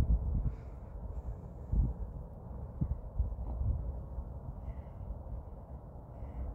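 Uneven low rumble of wind buffeting the microphone, with a few faint short animal calls at moments.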